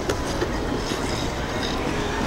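Ice skate blades scraping and gliding on a rink, heard as a steady, dense scraping noise from many skaters at once.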